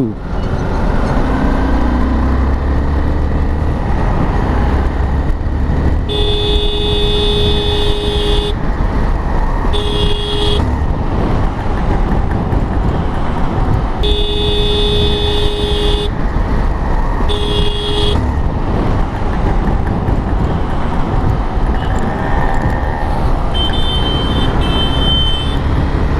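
A vehicle horn honking in four blasts, long, short, long, short, about six seconds in, over the steady rumble of wind and traffic on a moving motorcycle. Fainter high beeps follow near the end.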